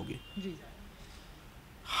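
A man's speech pausing between sentences: his word ends at the very start, a faint short vocal sound follows about half a second in, then quiet background until he starts speaking again near the end.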